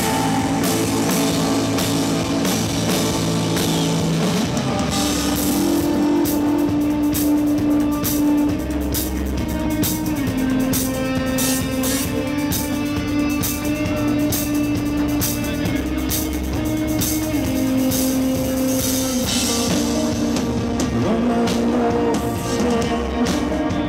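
Live rock band playing an instrumental passage: electric guitars and bass holding chords over a drum kit with cymbals, the chord moving higher about four seconds in.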